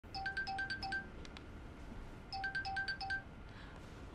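Mobile phone ringtone signalling an incoming call. It plays two bursts of quick, bright repeating notes, each about a second long, with a pause of over a second between them.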